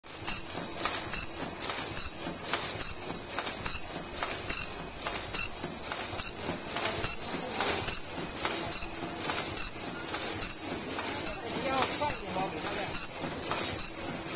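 Automatic disposable face-mask making machine running, its mechanism clattering with a dense, steady run of clicks and knocks. Voices can be heard faintly in the background.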